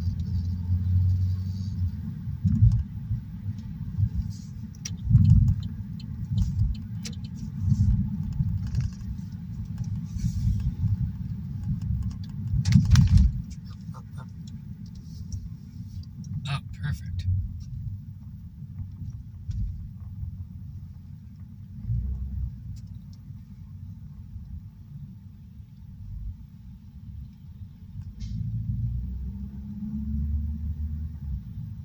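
Low, uneven road and engine rumble of a car being driven in town traffic, heard from inside the cabin, with a few short sharp clicks, the loudest about halfway through.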